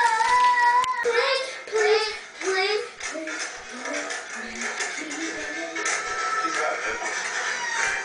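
A song with a high singing voice over a steady beat. A sung note is held for about a second at the start, then quicker sung phrases follow.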